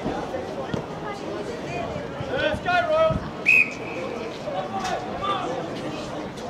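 Referee's whistle, one short, steady blast about halfway through, the loudest sound, trailing off briefly. Just before it come loud shouts, over a background of distant voices.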